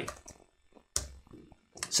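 A single sharp keystroke on a computer keyboard about a second in, in an otherwise quiet room.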